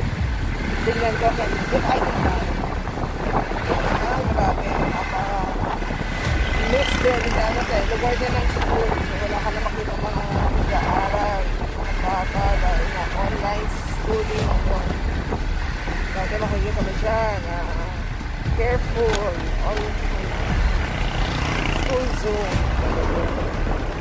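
Steady road noise of a motorcycle ride: wind buffeting the microphone over the rumble of the engine and tyres, with no change in pace.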